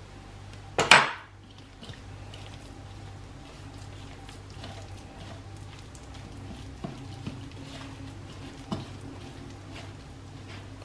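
A utensil clinks sharply against a ceramic bowl about a second in. Then hands mix and knead flour with mashed beetroot in the bowl: soft faint rustling with a few light taps, over a low steady hum.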